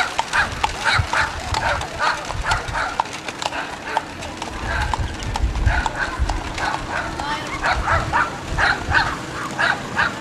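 Horses' hooves clopping on asphalt as a two-horse carriage passes, with a dog barking repeatedly in short bursts over it.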